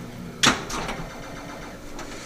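Pinball machine mechanisms: one sharp clack about half a second in, followed by a few fainter clacks.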